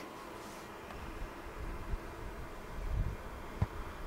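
Quiet background noise: a low rumble under a faint hiss, with one short click about three and a half seconds in.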